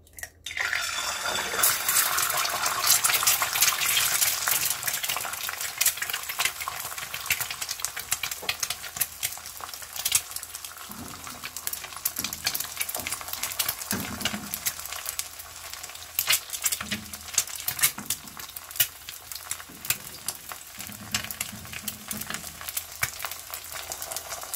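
A raw egg frying in hot oil in a preheated stainless-steel frying pan. It sizzles and crackles, starting suddenly about half a second in, loudest over the first few seconds, then settling to a steady, spitting sizzle. The pan was heated over medium-low heat until the oil rippled, which is the sign that it is hot enough for the egg not to stick.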